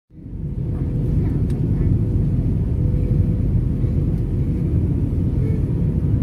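Airliner cabin noise in flight, heard from a window seat: a loud, steady low rumble of jet engines and airflow, with a faint steady hum above it.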